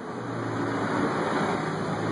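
A vehicle engine running: a steady low hum under a rushing noise, growing slightly louder.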